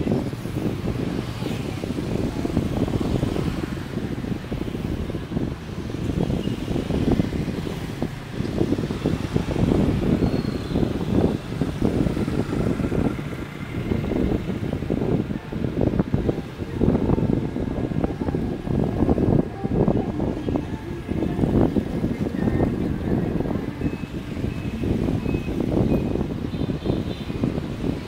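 Dense motorbike and scooter traffic heard from a moving motorbike: engines and road noise, with a heavy low rumble that surges irregularly from wind on the microphone.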